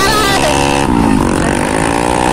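Motorcycle engine running under way, its pitch dropping about a second in and then climbing again.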